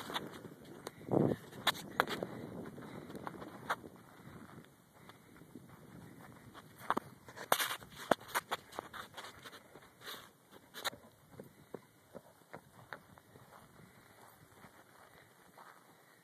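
Irregular footfalls and knocks on dry pasture ground, heard as scattered sharp clicks with a louder low thump about a second in.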